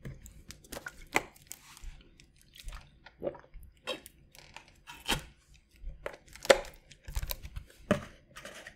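Thin plastic water bottle crackling and crinkling in the hand as it is lifted, squeezed and drunk from, in irregular sharp crackles with a few louder snaps.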